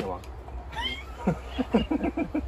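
People laughing: a brief high rising squeal about three-quarters of a second in, then a run of short, quick "ha-ha-ha" bursts through the second half.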